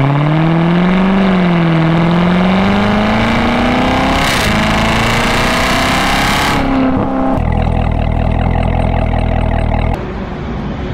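Supercharged 6.2-litre LT5 V8 of a 2019 Corvette ZR1 pulling under acceleration, its pitch climbing steadily for about seven seconds. It then cuts abruptly to a steadier, lower engine drone.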